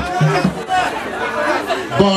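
Several voices talking over one another.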